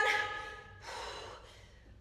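A woman breathing hard while working out with dumbbells: the tail of a drawn-out spoken word, then a breathy exhale about a second in and a fainter one after it.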